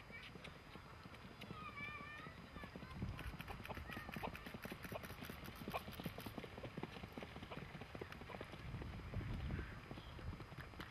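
Icelandic horse's hooves beating a quick, rapid rhythm on a dirt track, growing louder about three seconds in as the horse comes past.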